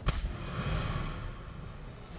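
A cinematic impact sound effect: one sharp hit just after the start, then a rumbling boom that slowly dies away, the kind of stinger laid under an on-screen graphic as it appears.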